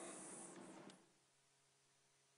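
Near silence with faint scratching of writing on a board during the first second, after which the sound cuts out entirely.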